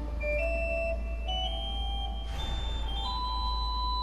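Pipe organ played softly: single held notes climbing step by step over a steady low drone.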